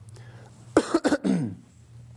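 A man coughing to clear his throat: a quick cluster of two or three short coughs starting about three-quarters of a second in, ending in a brief falling vocal sound.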